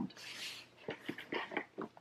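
A woman's audible breath in, followed by a few faint, short, soft sounds.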